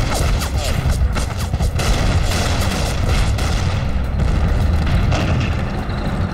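Battle sound effects: a dense run of shell explosions and gunfire over a deep, continuous rumble.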